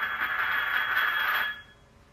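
A ceramic bowl scraping across a tiled floor as a cat paws at it. It is a steady scrape that stops about a second and a half in.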